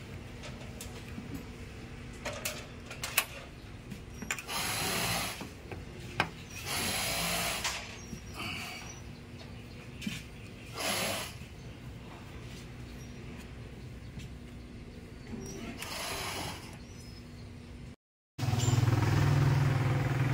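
A hex key turning the brass service valves on a split-type air conditioner's outdoor unit, with small metal clicks and several short hisses of refrigerant as the valves are opened into the newly vacuumed lines. Near the end, after a brief break, a louder low steady hum comes in.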